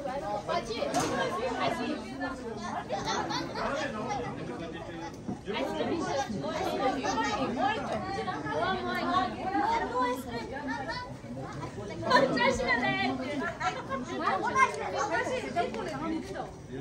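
A group of people chatting, many voices talking over one another, with a few louder voices near the end.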